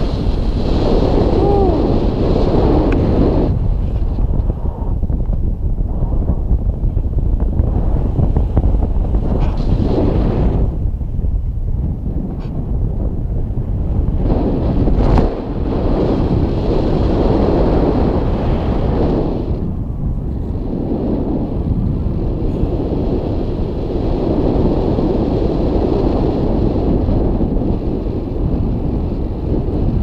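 Wind buffeting a camera microphone in paragliding flight: a loud, low rushing that swells and eases every few seconds.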